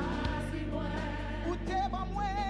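Live gospel worship song in Haitian Creole: a woman sings the lead with vibrato over sustained low keyboard and bass notes and backing voices.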